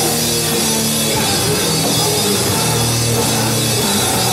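Live band playing loud, distorted heavy rock: drum kit with a constant wash of cymbals, plus electric guitar and bass, with no break.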